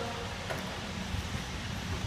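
Low, steady rumble of a large wooden box rolling on its base as it is pushed across a concrete floor, with a single faint knock about half a second in.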